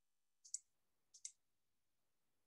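Faint clicking at a computer during an online class: two quick double clicks, about three quarters of a second apart, over near silence.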